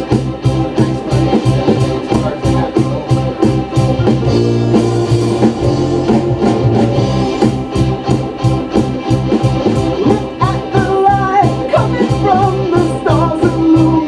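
A rock-song mix played back over studio monitors: organ chords over a steady drum beat, the drums dropping out briefly a little after four seconds in, and a wavering lead line coming in about ten seconds in. A muddy mix in which the organ and guitars drown out the rest.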